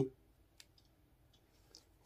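Quiet room tone with two faint short clicks, one about half a second in and one near the end.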